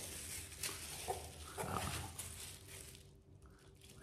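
Plastic bubble wrap crinkling and rustling in the hands as it is pulled off a small toy figure, dying away about three seconds in.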